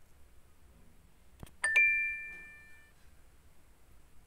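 A short click, then a quiz game's bright two-note chime that fades out over about a second: the sound for a correct answer.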